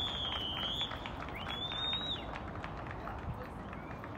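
Referee's whistle blown twice: a long blast, then a shorter one about a second and a half in, rising slightly in pitch.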